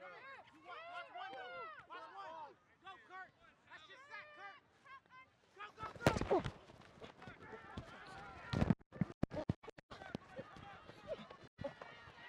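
Voices shouting on the field, then a loud burst of noise about six seconds in as the ball is snapped and the linemen collide, followed by several brief cutouts in the sound.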